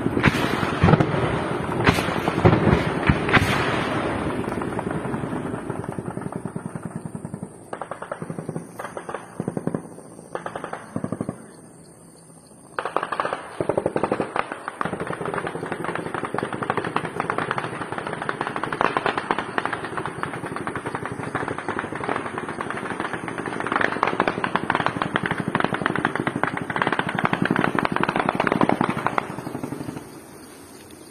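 Sustained automatic gunfire: long runs of rapid shots, with a brief break about twelve seconds in before the firing resumes.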